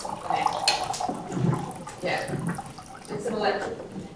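Indistinct talk from people in a conference room, voices that are not clear enough to make out words.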